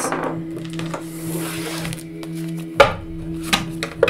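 Tarot cards handled on a tabletop, with a soft rustle and one sharp tap of the deck against the table about three seconds in, then a couple of lighter clicks. Soft background music with a steady low drone runs under it.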